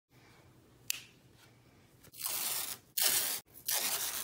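Yellow masking tape being pulled off its roll in three quick strips, each a short rasping unroll, to tape a watercolor sheet down. A single sharp click comes about a second in.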